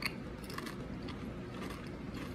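A Pringles potato crisp being crunched and chewed with the mouth closed: a sharp crunch at the start, then a scatter of softer crunches.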